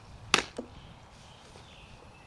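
Sharp smack of a softball striking a catcher's mitt and gear about a third of a second in, followed by a softer knock, during a catcher's receiving and blocking drill.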